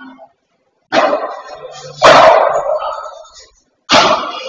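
Padel ball being struck in a rally: three sharp hits about a second apart, each ringing on in the echo of the indoor court.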